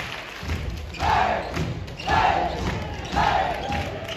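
Voices shouting in short bursts about once a second in a large hall, with thuds.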